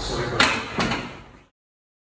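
Two sharp clanks from a loaded Smith machine bar, about half a second apart, then the sound cuts off abruptly.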